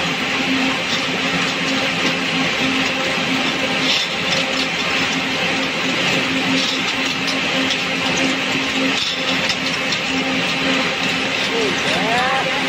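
Ring spinning frame running: a steady whir of many spindles with a low hum, and small clicks of full bobbins being pulled off and empty tubes pushed onto the spindles.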